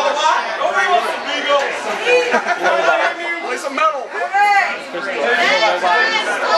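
Indistinct chatter: several voices talking over one another in a large room, with no music playing.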